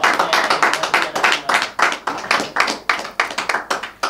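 A small audience clapping: a fast, irregular patter of individual hand claps that cuts off suddenly at the end.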